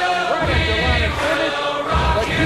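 Soundtrack music: a group of voices singing together over a low, pulsing beat.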